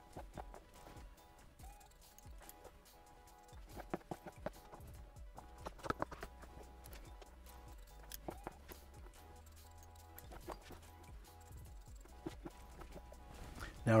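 Hairdressing shears snipping through hair with comb handling: short, sharp, irregular snips, a cluster of them about four to six seconds in.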